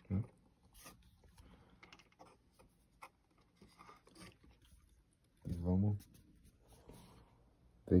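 Faint scattered clicks and light scrapes of small plastic parts being handled as a micro servo is fitted against a toy car's plastic chassis. A brief hum from a man's voice comes a little past halfway.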